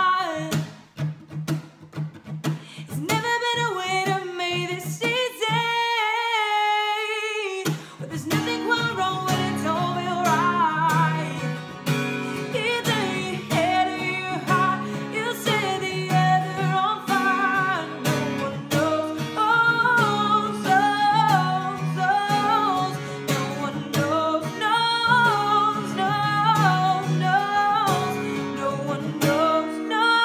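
A woman singing a pop ballad to her own strummed acoustic guitar. About a fifth of the way in the guitar stops for about two seconds while her voice carries on alone with vibrato, then the strumming comes back in.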